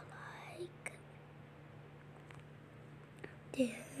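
Faint whispering and breathy mouth sounds over a steady low hum, with a few faint clicks. A voice starts speaking just before the end.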